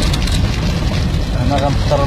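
A vehicle driving on a worn, patched asphalt road, heard from inside the cabin: a steady, loud low rumble of engine and tyres, with a voice speaking briefly near the end.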